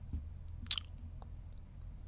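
A quiet pause with faint mouth sounds close to a studio microphone: small lip clicks and a short breath about two-thirds of a second in, over a low steady hum.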